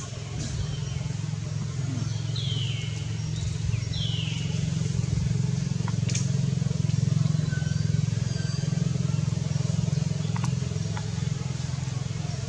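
A steady low engine drone, with two short high falling chirps about two and a half and four seconds in, and a few faint clicks later.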